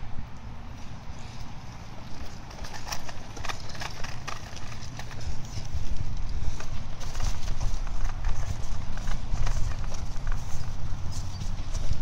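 Stroller rolling along an asphalt path: a steady low rumble from the wheels, with irregular clicks and knocks starting about two and a half seconds in and getting louder about halfway through.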